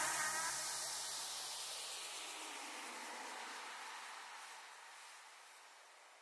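Faint hiss-like wash left as a dance-music track ends, strongest in the highs, fading steadily and dying out completely about five seconds in.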